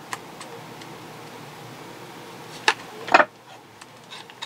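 A few short, sharp clinks of steel bolts shifting against each other in a plastic parts bin as a hand sorts through them, the loudest two near the end, over a steady low room hum.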